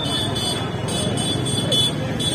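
Street noise from passing cars and a crowd on foot, with voices mixed in. Over it, a thin high beeping pulses about three times a second.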